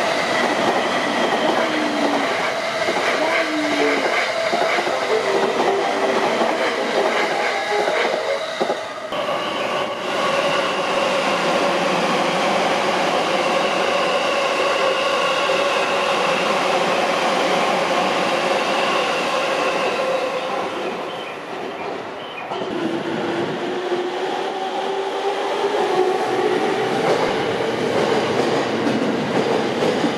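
Electric trains running past a station platform: a loud, continuous noise of wheels on rail with clattering over the rail joints and steady whining tones. In the last several seconds a whine rises slowly in pitch.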